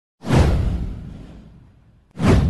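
Whoosh sound effect for an animated news intro: a sudden swoosh about a fifth of a second in that sweeps downward in pitch over a deep low boom, then fades out over about a second and a half.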